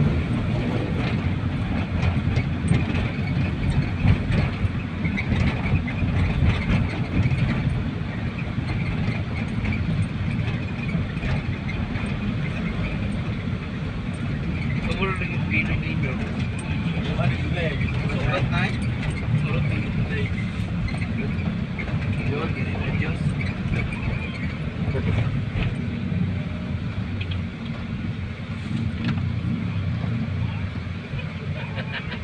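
Steady low rumble of road and engine noise inside a moving van's cabin, with voices talking now and then, most clearly about halfway through.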